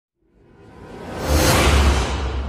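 A news-intro whoosh sound effect with a deep rumble beneath it. It rises out of silence over about a second and a half and is loudest near the end, as the 'Breaking News' title appears.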